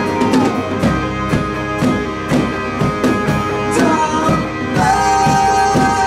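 Live band music: electric and acoustic guitars over regular drum hits, with a man singing long held notes that slide to a new pitch near the end.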